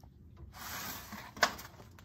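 Soft rustle of paper being handled, then a single light tap about one and a half seconds in.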